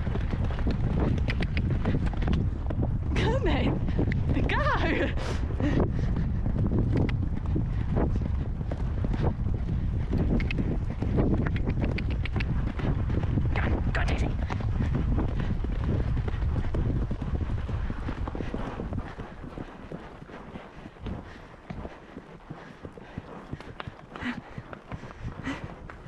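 Hoofbeats of a horse moving fast along a grass track, with heavy wind rumble on the rider-mounted camera's microphone. About three-quarters of the way through the rumble drops away as the horse slows, and single hoof strikes come through more clearly.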